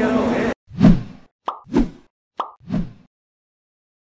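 Crowd and voice noise cuts off abruptly about half a second in. Three short cartoon pop sound effects follow, with a sharp click between each pair, as animated graphics pop onto the screen.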